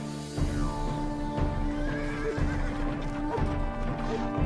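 Horses galloping, with a regular beat of hooves about twice a second, and a horse whinnying about two seconds in, all over background music.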